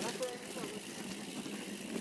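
Mountain bike rolling down a dirt trail: a steady, fairly quiet rush of tyre and riding noise.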